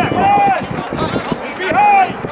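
Two loud shouted calls about a second and a half apart, each held briefly with a pitch that rises and falls, over a background of other voices.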